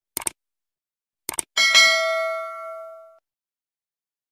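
Subscribe-button animation sound effect: a quick double click, another double click about a second later, then a bright bell ding that rings out for about a second and a half.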